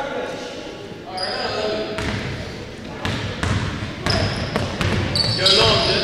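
Pickup basketball in an echoing gym: players shouting to each other and a basketball bounced on the hardwood floor, with short high sneaker squeaks near the end.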